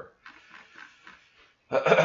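A man clears his throat, suddenly and loudly, near the end, after about a second and a half of faint room noise.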